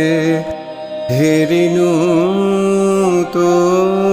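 Male voice singing a Rabindrasangeet in tappa style over a steady instrumental accompaniment. He holds long notes with quick wavering ornaments. He breaks off briefly about half a second in, then begins a new phrase that glides upward.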